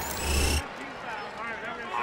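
Broadcast replay-transition sound effect: a whoosh with a low boom lasting about half a second, then cutting off suddenly. Faint crowd voices follow.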